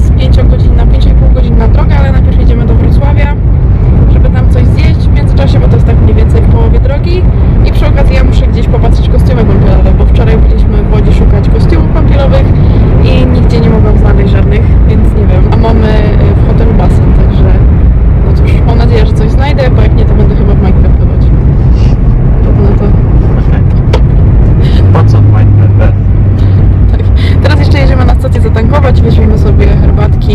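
Steady low rumble of a car driving, heard from inside the cabin under a woman's talking; a steadier low drone joins it near the end.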